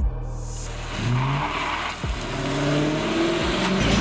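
Dodge Charger R/T's HEMI V8 pulling away under acceleration, its engine note rising about a second in and again over the second half as it revs up.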